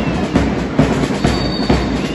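Marching-band drums beating a steady cadence, a little over two beats a second, over a dense background din.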